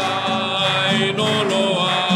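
Church hymn: a voice holding long notes over strummed acoustic guitar.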